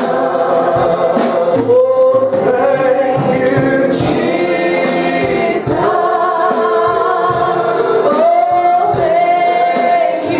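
Gospel worship song sung by a group of voices, with long held notes.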